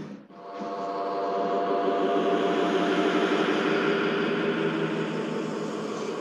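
Dark ambient drone from an audiobook's intro soundtrack: a sustained hum of several held tones over a hiss, fading in after a short dip at the start and holding steady.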